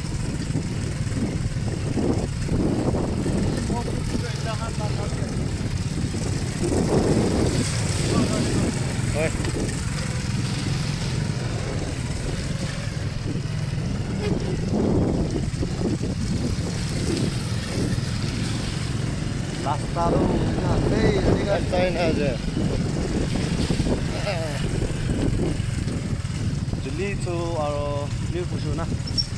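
Motorcycle engines running steadily at low speed over a rough dirt track, a continuous low drone throughout, with voices calling out now and then.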